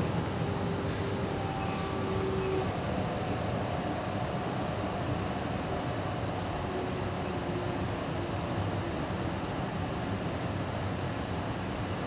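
Steady interior running noise of a Sydney Trains H set double-deck electric train under way: a constant rumble of wheels on the track, with a few faint held tones and some light clicks in the first few seconds.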